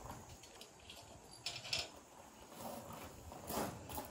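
Faint footsteps and shuffling on loose gravel: a few short scuffs about a second and a half in, and again near the end.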